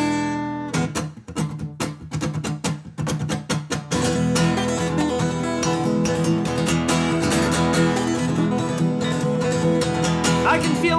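Solo acoustic guitar strummed: a ringing chord, then choppy, clipped strokes for a few seconds, then steady full strumming from about four seconds in as the song's intro.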